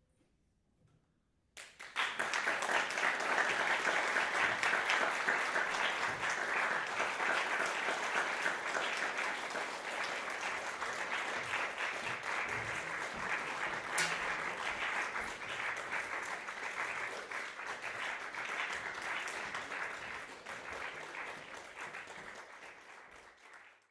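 Near silence for a moment, then audience applause breaking out suddenly about two seconds in and carrying on steadily, easing slightly toward the end.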